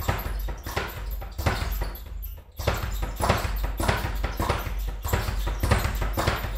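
Speed bag being punched in single strikes, knocking against its overhead rebound platform in a fast, rapid rattle. There is a brief break a little past two seconds in, then the rhythm resumes.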